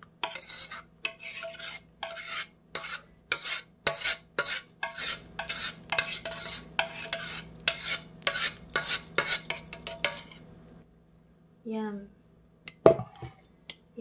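Metal spoon scraping and clinking against a saucepan as thick champurrado is scraped out into a mug, about two or three strokes a second for ten seconds. After a short pause there is a single sharp knock near the end.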